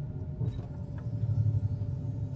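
Low, steady rumble of engine and road noise inside a moving van's cabin, growing louder for a moment past the middle.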